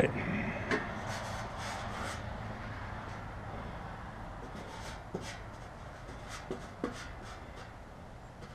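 Quiet handling noises from a small metal satellite dish and its mounting arm being turned over and rubbed by hand, with a few light clicks and taps.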